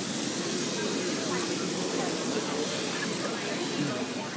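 Crowd of many people talking at once, a steady babble of voices, with a continuous hiss over it.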